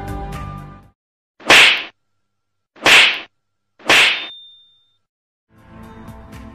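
Three short, sharp swishing hits from an animated like/subscribe/bell button end card, one for each button press, about a second to a second and a half apart. The last hit is followed by a faint, thin ringing tone.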